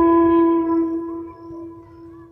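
Background music: a flute holding one long, steady note that fades away.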